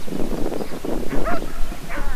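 An Australian shepherd barking and yipping several times, in the frustrated barking of a dog confused by its handler's cues.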